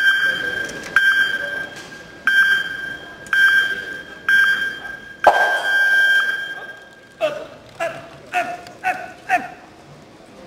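Electronic start-clock countdown for a track-cycling standing start: five short beeps about a second apart, then one long beep that signals the go, as the starting gate releases the bike with a sharp clack. About two seconds later come five short, lower-pitched calls.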